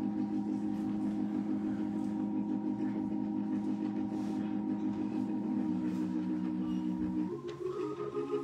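Organ holding sustained chords with a slight wavering vibrato, moving to a new chord about seven seconds in.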